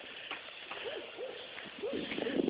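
A dog's plush squeaky chew toy being squeaked: a few short, faint squeaks that rise and fall in pitch, coming in the second half.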